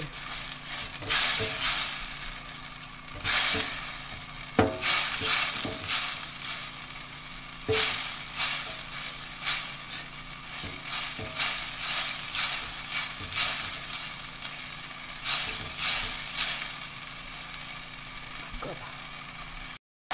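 Silicone spatula stirring and scraping a thick chili-paste sauce around a nonstick pan in uneven strokes, about one a second. Under the strokes is a steady sizzle of the sauce heating toward a bubbling simmer.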